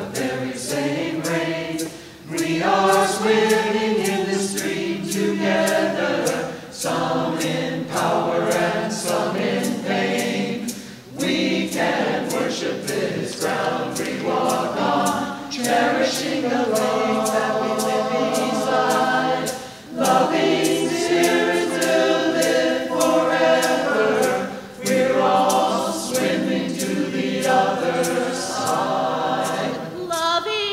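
Mixed choir of men's and women's voices singing a hymn in several long, sustained phrases, with brief pauses for breath between them.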